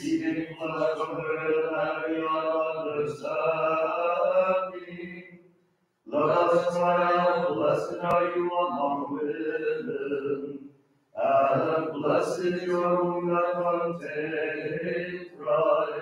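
Byzantine-rite Vespers chant: the voice sings the text in phrases of four to five seconds, each held largely on one steady reciting pitch, with short pauses for breath between phrases.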